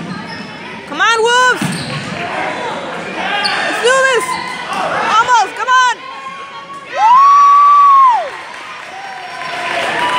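A gym scoreboard horn sounds once near the end, a flat steady tone held for just over a second that starts and stops sharply; it is the loudest thing here. Before it come several short rising-and-falling shouts over the noise of the game in the hall.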